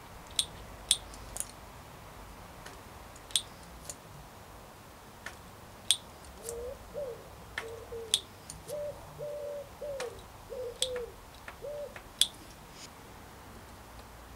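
Sharp clicks scattered through, a few seconds apart, and from about six seconds in a bird's run of about seven short, low cooing notes.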